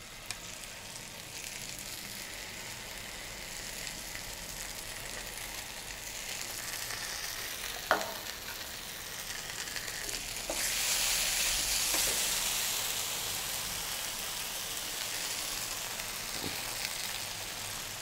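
Mushrooms and onions with white sauce sizzling in a frying pan while a spatula stirs them; the sizzle grows louder about ten seconds in. A single sharp knock sounds about eight seconds in.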